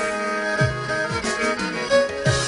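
Kemençe, a small bowed fiddle, playing a folk melody in held notes over a backing track, with two deep beats that drop sharply in pitch about half a second and a second in.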